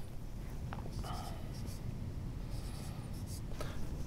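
Dry-erase marker writing on a whiteboard: faint scratchy strokes in a few short spells.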